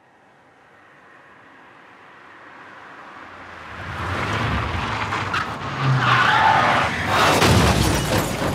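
A car approaching along a road, its noise swelling steadily, then tyres skidding loudly in the second half, ending in a crash just before the end.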